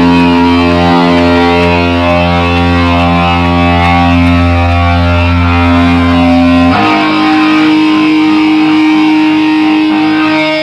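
A band plays live, with heavily distorted electric guitar and bass holding one long sustained chord. About seven seconds in, it shifts to another held chord.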